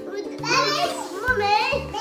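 A young child talking excitedly in a high voice, with a background music track with a steady bass line underneath.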